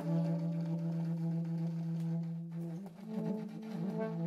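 Saxophones playing free-improvised long tones: one low note held with a rich, buzzing overtone series while a higher note fades away about two and a half seconds in. Near the end, two close low pitches waver and beat against each other.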